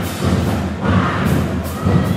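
Marching band drumline playing a loud cadence: heavy bass drum hits with cymbal crashes in a steady rhythm.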